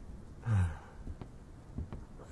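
A man's short, low sigh about half a second in, followed by a quiet pause with a couple of faint clicks.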